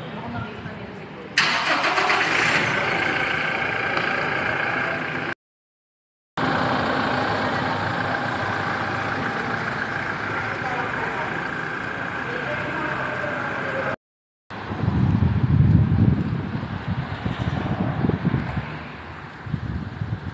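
Car engine running and vehicle noise, rising to an uneven low rumble in the last few seconds, mixed with voices. The sound cuts out briefly twice.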